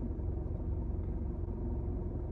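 Steady low rumble of a car, heard from inside its cabin.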